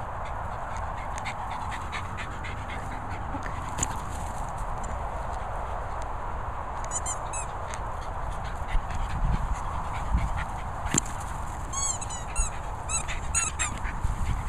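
A dog's rubber squeaky toy squeaking as the dog chews it: a quick run of short high squeaks about seven seconds in and a longer run near the end, over a steady background hiss.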